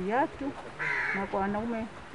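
A woman's speaking voice in short broken phrases, the words unclear.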